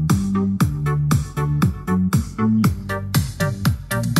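Electronic dance music played loudly through a small XM520 wood-cased rechargeable Bluetooth speaker, with a deep, thumping bass and a steady kick drum about three times a second.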